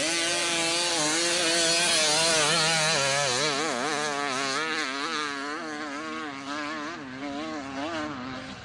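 Motorcycle engine held at high revs while the rear wheel spins in loose sand, over a wide hiss. From about three seconds in its pitch wavers rapidly up and down, and it fades toward the end.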